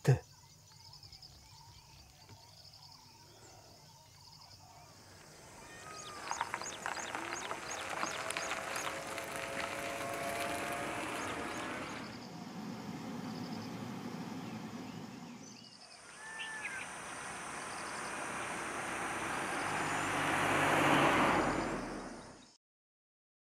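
Outdoor ambience: a steady rushing noise with short bird chirps. The noise swells louder over the last few seconds and then cuts off suddenly.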